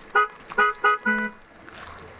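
Car horn tooted four times in quick succession, the last toot slightly longer.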